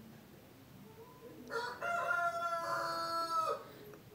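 A rooster crowing once, a pitched call of about two seconds that starts about one and a half seconds in.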